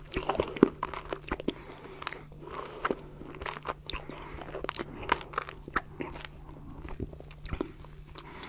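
Close-miked mouth sounds of a mouthful of stracciatella pudding being chewed: soft wet smacks and small crunches of the chocolate flakes, coming as irregular clicks throughout, the loudest about half a second in. A faint steady low hum lies beneath.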